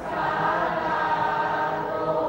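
A class of students chanting a Thai verse aloud in unison: many voices reading together in a sing-song recitation.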